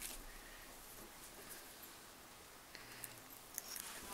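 Quiet room tone with a few faint, light clicks and taps near the end, from nail-stamping tools being handled.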